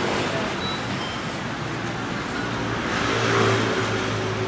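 Street traffic: a motor vehicle passing, its noise building to a peak about three seconds in over a steady low hum.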